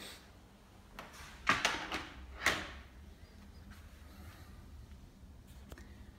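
Hard plastic housing parts of a humidifier being handled and set down: a cluster of short knocks and scrapes between about one and two and a half seconds in, the loudest near the end of that cluster.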